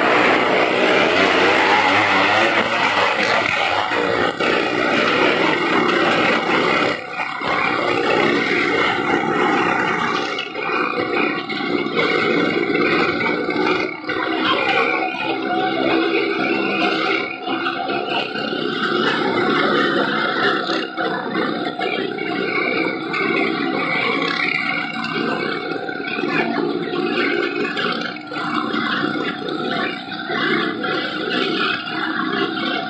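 Engines of a small car and motorcycles revving continuously as they ride the wall of a well-of-death drum. The noise is loud and dense, and grows somewhat duller after about ten seconds.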